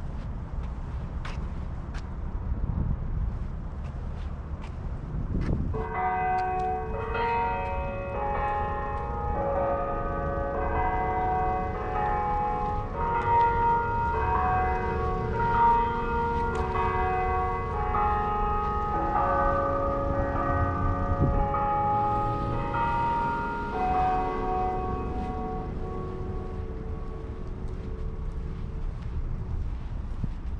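Clock bells chiming a tune of many overlapping ringing notes, starting about six seconds in and dying away near the end, over a steady low outdoor rumble.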